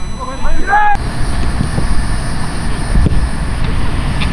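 Wind rumbling on the microphone outdoors: a loud, steady low rumble that begins abruptly about a second in, after a second of voices. A few faint knocks sound through it.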